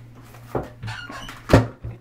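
A dull knock about half a second in, then a louder thump about a second and a half in, from things being handled, over a steady low hum.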